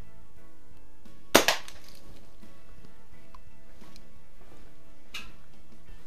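Daisy Model 177 BB pistol fired once about a second in: a single sharp crack, then a smaller knock a split second later. A faint click follows a few seconds later.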